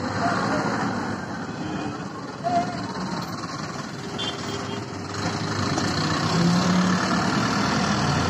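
Street traffic heard from an open cycle rickshaw, with a truck's diesel engine running close alongside and growing louder in the second half. A brief high tone sounds about two and a half seconds in.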